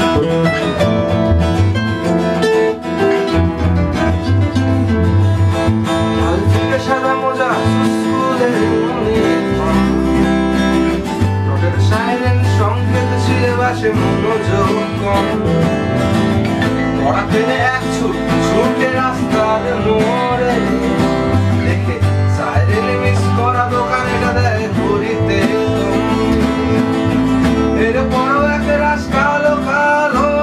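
An electric bass guitar and two acoustic guitars playing a song together live, the bass notes strong underneath the steady guitar accompaniment.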